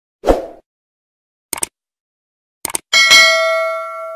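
Subscribe-button animation sound effects: a short thump, two quick clusters of clicks about a second apart, then a bright notification-bell ding about three seconds in that rings out slowly and is the loudest sound.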